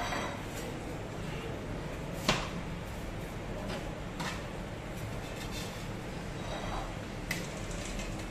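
A metal spatula clinking and scraping against an aluminium baking tray and a china plate as pieces of burma kadayıf are lifted and served. There are a few scattered sharp clinks, the loudest a little over two seconds in, over a steady shop background hum.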